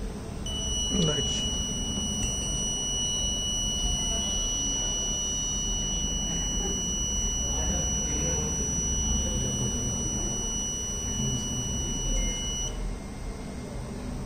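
Piezo buzzer on the health-monitoring board sounding one steady high-pitched tone for about twelve seconds, stopping shortly before the end: the high body-temperature alarm, set off by the heated temperature sensor.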